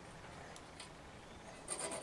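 Faint room hiss, then near the end a short scratchy rasp: a continuity tester's metal probe tip scraping against a heater's metal terminal.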